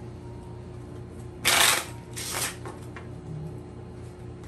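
Tarot cards being shuffled by hand: two short bursts of card noise, the louder about a second and a half in and a weaker one just after, over a steady low hum.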